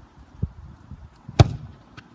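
A golf club strikes a football with a dull thud about half a second in, then a much louder sharp smack about a second later as the ball arrives at the goal.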